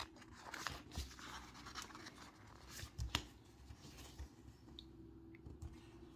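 Faint rustling and scraping of fingers pressing and smoothing a vinyl sticker onto planner paper, with a few soft clicks or taps.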